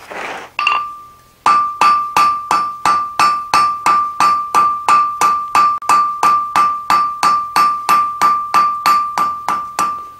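Blacksmith's hand hammer striking hot steel on an anvil, an even run of blows about three a second starting a second and a half in, each blow ringing the anvil with the same clear high note. The smith is rounding up the thin drawn-out stem of a forged leaf, taking it from octagon to round. A short burst of rushing noise comes just before the hammering starts.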